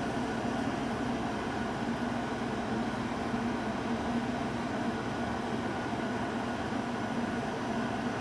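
Steady background hum and hiss of a small room, with a faint steady low tone throughout. There are no handling clicks.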